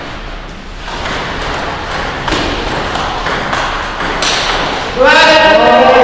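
Table tennis rally: the celluloid ball clicking off paddles and table about twice a second. About five seconds in, a man gives a loud shout as the point is won, the loudest sound here.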